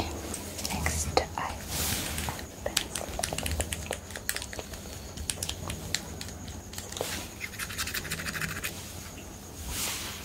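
Close-miked handling of a small plastic makeup pen: a run of sharp clicks and taps in the first few seconds, then a short scratchy rasp of rapid fine ticks a little before the end.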